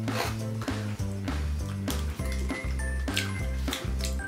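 Background music with a bass line and a steady beat.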